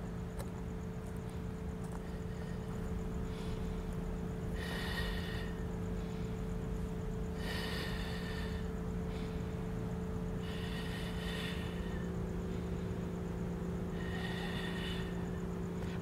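A woman's breath blown out in time with repeated hip side lifts, four exhales about three seconds apart, over a steady low background hum.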